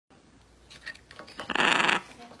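A few faint clicks of a macaw's beak on a can's ring-pull, then about a second and a half in a loud, raspy call from the blue-and-yellow macaw lasting about half a second.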